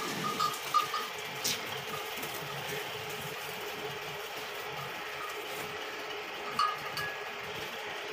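A small bell clinking a few times in the first second and again briefly near the end, over steady background noise.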